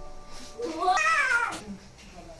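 A cat meowing once, a long call that rises and then falls in pitch, over soft background music.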